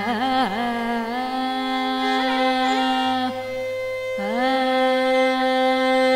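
Female Carnatic vocal with violin accompaniment: a sung melodic line with sliding, oscillating ornaments (gamakas) and long held notes, the violin following her, over a steady drone, with no percussion.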